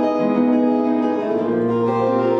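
Three acoustic guitars playing an instrumental piece together, their notes ringing and overlapping in a steady texture, with a new low note coming in about one and a half seconds in.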